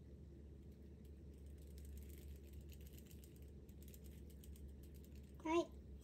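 Light, rapid clicking as powdered decorating sugar is dusted over a cake, over a low steady hum. A short vocal 'ah' comes near the end.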